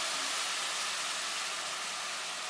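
Spice paste sizzling hard in a hot non-stick wok as a steady loud hiss, the burst of steam from a little water added to the hot oil.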